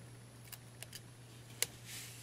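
A few faint, sharp ticks of fingertips peeling the backing off a small cut piece of Scotch 924 adhesive transfer tape, the loudest near the end, over a low steady hum.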